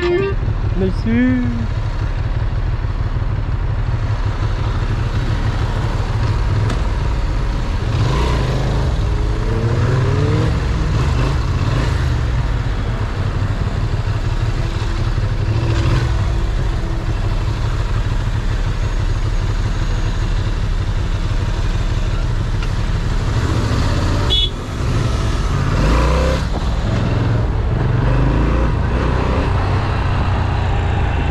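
Ducati Monster's V-twin engine running under a rider in city traffic, a steady low rumble. The revs climb several times between about eight and eleven seconds in, and again near twenty-six seconds.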